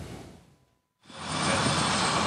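Steady noise of a parked jet airliner's engines running, with a faint high whine, fading in about a second in after a brief silence.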